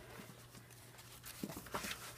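A glossy magazine page being turned by hand: a faint, brief paper rustle in the second half.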